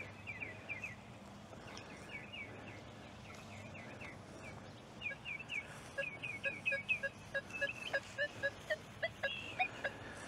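A bird chirping over and over in short falling notes. From about five seconds in, a Nokta Triple Score metal detector gives short repeated beeps, about three a second, as its coil sweeps back and forth over a buried target.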